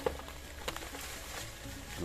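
Dry banana leaves rustling and crackling as they are handled, with a few sharp snaps.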